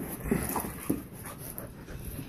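Two poodles play-wrestling, with a few short dog vocal sounds in quick succession in the first second and the noise of their scuffle throughout.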